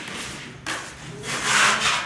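A hand tool rasping across a plastered ceiling during surface preparation for painting, in two strokes about a second apart.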